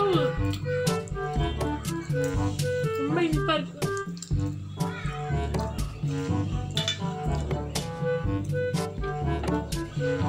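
Background music with a steady beat and a bass line. Short bits of a voice come through near the start and again about three seconds in.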